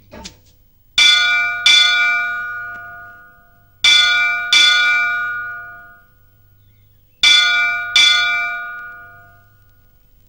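A temple bell struck in three pairs of strokes, the two strokes of each pair under a second apart, each pair ringing on and slowly fading for about two to three seconds before the next.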